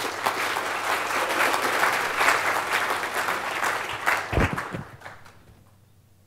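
Audience applauding: a burst of clapping that starts at once, holds for about four seconds and dies away about five seconds in, with a single low bump near its end.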